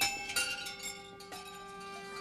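Wind chimes ringing: several chime notes struck one after another in the first second and a half, each left ringing and slowly fading.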